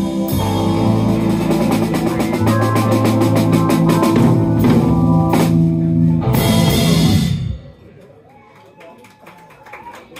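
Live rock band, drum kit, electric guitar and held organ chords, playing the closing bars of a song and ending on a few final crashes. The music stops abruptly about three-quarters of the way through, leaving faint voices in the room.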